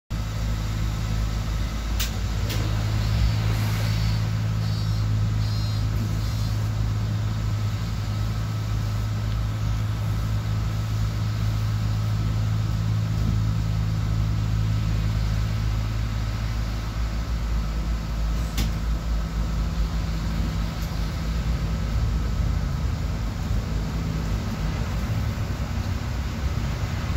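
City bus engine idling steadily, heard from inside at the front, with a short run of high beeps about four seconds in and a few sharp clicks. In the last third the steady engine note breaks up into a rougher, changing sound as the bus pulls away.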